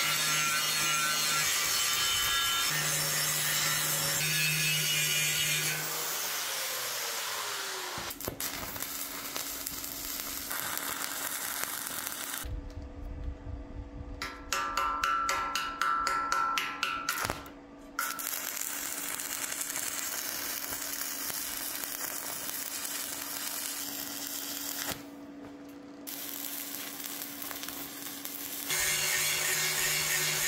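Angle grinder grinding steel, winding down in pitch about six to eight seconds in. Then stick welding, with crackling around the middle over a steady hum. The grinder starts again near the end.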